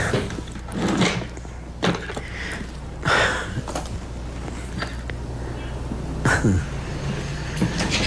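Papers being shuffled and desk items handled while someone rummages through a desk: a series of short rustles and light knocks, several in the first half and two more near the end, over a low steady hum.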